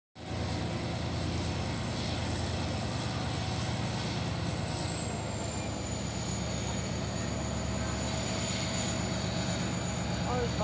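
Diesel locomotive engine running as the locomotive slowly approaches: a steady low rumble. A thin high whine runs alongside it and drops slightly in pitch about halfway through.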